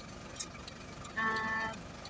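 A car horn sounds once: a short, steady toot of about half a second, just past the middle, over a steady low background rumble.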